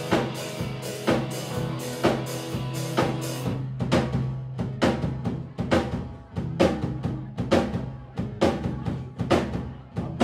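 Live band playing an instrumental passage with no vocals: a drum kit keeps a steady beat under sustained bass and keyboards. About three and a half seconds in, the bright hiss over the beat drops away, leaving sparser drum hits.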